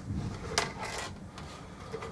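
Faint handling of a plastic pitcher as it is picked up off a workbench, with a light knock or two about half a second in.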